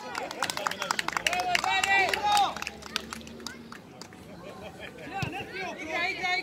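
High-pitched children's voices shouting on an outdoor football pitch, loudest in the first two and a half seconds, with a rapid patter of sharp clicks over them. Quieter for a couple of seconds, then more shouting near the end.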